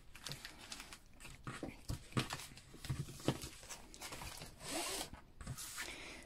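Vinyl decal stickers handled and slid across a tabletop: faint scattered scrapes and light taps, with a longer rustle about five seconds in.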